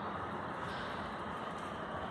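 Steady city street noise, the even hum of traffic.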